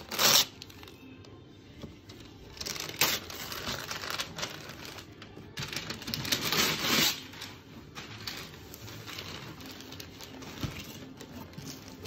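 Wrapping paper being torn and crinkled off a gift box in irregular bursts, over faint background music.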